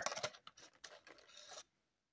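Plastic pencil packaging being handled, a faint scratchy rustling for about a second and a half that cuts off suddenly.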